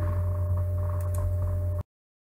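Steady low electrical hum on the microphone line, with two faint mouse clicks about a second in. The sound cuts off suddenly near the end as the screen recording is stopped.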